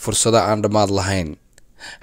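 Speech only: a low-pitched voice narrating, pausing after about a second and a half.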